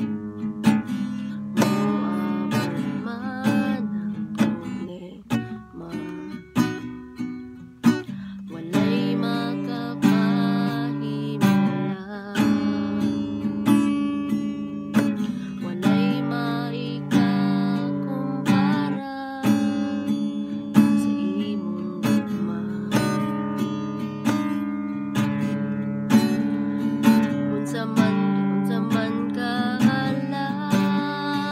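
Acoustic guitar strummed in a steady rhythm, playing the chords of a worship song. The playing is softer for a few seconds around the middle of the first third, then fuller again.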